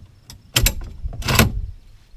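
Telescoping metal outrigger frame section pulled out of the inner frame after its spring push-buttons are pressed. There are a couple of sharp metal clicks about half a second in, then a short sliding scrape of metal tube on metal just after the middle.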